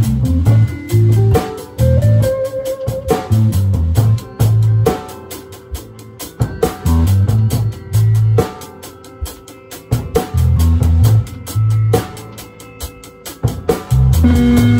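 Live band music: an acoustic guitar strummed and picked with drums and a bass line. The bass plays short groups of low notes with gaps between, under sharp drum strikes.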